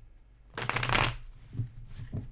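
A deck of tarot cards being riffle-shuffled by hand: a quick fluttering rattle of cards about half a second in, lasting about half a second, followed by a light knock.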